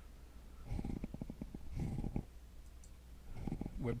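A man's low, creaky vocal sounds, three short drawn-out murmurs with no words: about a second in, around two seconds in and near the end. A steady low electrical hum runs underneath.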